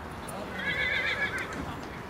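A horse whinnying once, a high wavering call about a second long that starts about half a second in.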